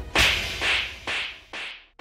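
Dramatized TV-serial slap sound effect: one sharp crack about a fifth of a second in, repeated as three fainter echoes about half a second apart, the last cut off suddenly.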